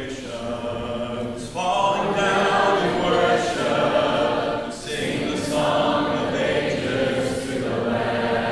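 A large congregation singing a hymn together a cappella, many voices in harmony, in sung phrases with short breaths between them.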